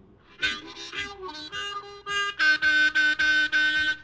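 Blues harmonica playing a short instrumental break between sung lines: a few quick separate notes, then about midway a steady chord re-blown in a pulsing rhythm, about four times a second.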